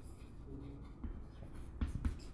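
Chalk writing on a chalkboard: faint scratching strokes as letters are written, with a sharper tap of the chalk near the end.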